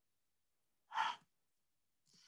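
A man's single short breath, like a sigh, about a second in, against otherwise near silence.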